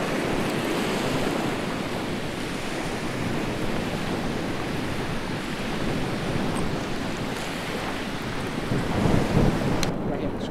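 Steady outdoor wind noise buffeting the microphone, mixed with the wash of surf. It swells louder in a gust near the end and then cuts off abruptly with a click.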